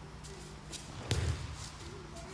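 Bare feet and hakama shuffling on tatami mats, with a single heavy thud on the mat about a second in as an aikido partner is thrown and lands.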